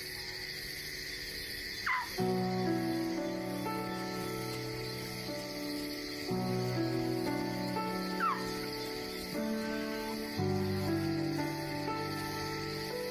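Documentary background music of sustained chords, changing about every four seconds. Short falling whistles come twice, near the start and about eight seconds in.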